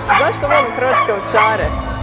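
Croatian Sheepdog whining in about four short, high yips whose pitch bends up and down.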